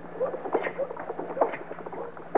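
Radio-drama sound effect of two people walking: uneven footsteps, several a second, over a faint steady hum.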